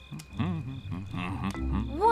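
Frogs croaking in a string of short, low calls, over soft background music.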